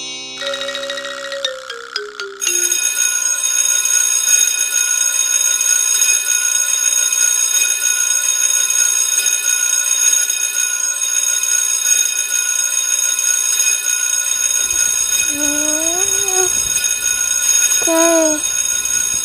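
A short run of chime notes stepping down in pitch, then an alarm ringing loudly and without a break from about two seconds in. Near the end a sleepy girl's groan sounds over the ringing.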